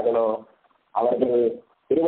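Only speech: a man speaking Tamil in short phrases, with two brief pauses.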